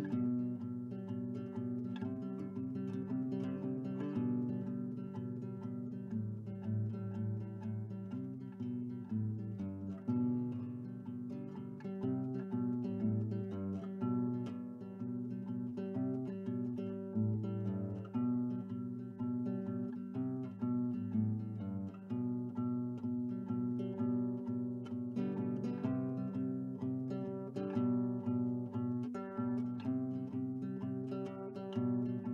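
Background music: plucked acoustic guitar playing a steady run of notes.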